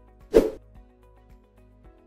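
A short whoosh transition sound effect about a third of a second in, over quiet background music with long held notes.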